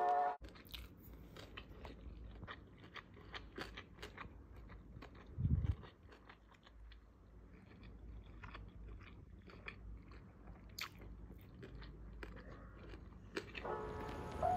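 A person chewing and biting food close to the microphone, giving faint, irregular small crunches and clicks. A dull low thump comes about five and a half seconds in.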